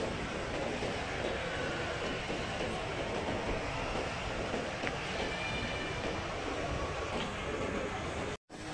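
Shopping mall background noise: a steady, even rumbling hum of the building's air handling and machinery, with faint distant shopper sounds.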